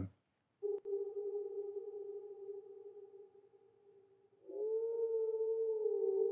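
A held, pitched tone starts under a second in and slowly fades out by about three and a half seconds. A second, slightly wavering tone at about the same pitch starts about four and a half seconds in and carries on.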